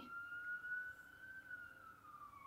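A faint siren: one long wailing tone that rises slightly, then begins to fall in pitch about a second and a half in.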